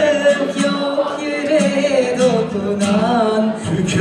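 Live acoustic duet: acoustic guitar accompaniment under a held melody line that wavers in pitch, with no words between sung lines.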